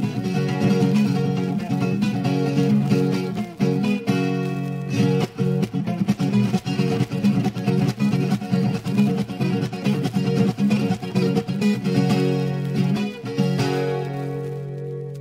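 Instrumental moda de viola: a Brazilian viola caipira strummed and plucked in a steady rhythm, with a short break about four seconds in.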